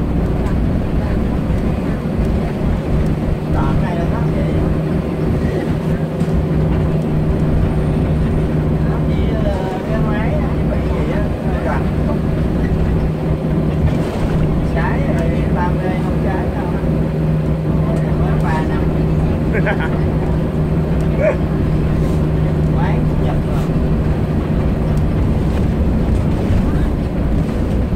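Steady drone of a coach bus's engine and road noise, heard from inside the passenger cabin while the bus drives along, with faint voices over it.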